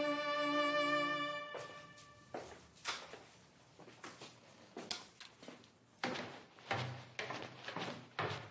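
Sustained bowed-string music stops about a second and a half in. Irregular footsteps follow, short knocks on floor and stairs, growing louder from about six seconds in.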